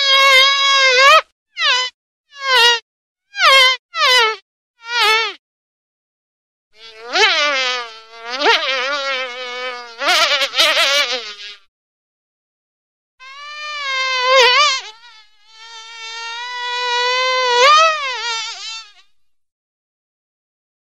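A fly buzzing in flight, in stop-start bursts: a short run of brief buzzes, then longer buzzes whose pitch wavers and swoops up and down, with silent gaps between.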